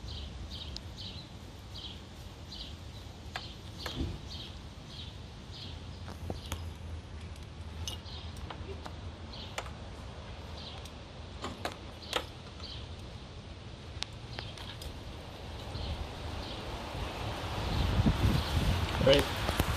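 Scattered small clicks and taps from hands handling plastic wire connectors and wire, over a steady low hum. A faint high chirp repeats about two to three times a second in the background, in two runs.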